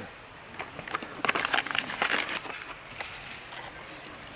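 Paper coffee bag crinkling and rustling as ground coffee is scooped out of it, a flurry of crackly rustles from about half a second to two and a half seconds in, then quieter.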